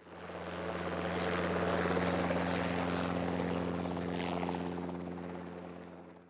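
Helicopter hovering overhead, a steady engine and rotor drone that fades in at the start and fades away near the end.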